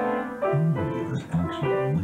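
Upright piano being played: five notes or chords in a row, a new one about every half second, each with a brief break before the next.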